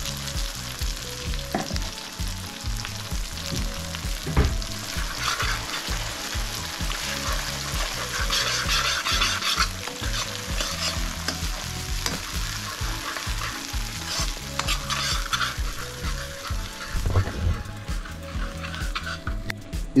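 Masala paste sizzling in hot oil in an iron kadai while a steel ladle stirs and scrapes it. The hiss swells at times with the stirring, and there are a few sharp knocks of the ladle against the pan.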